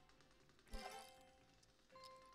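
Very faint background music, with one soft plucked note about three-quarters of a second in that fades away.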